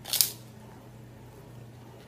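One short crunch as a bite is taken from a crisp popped-grain Magic Pop, just after the start, followed by a faint steady low hum.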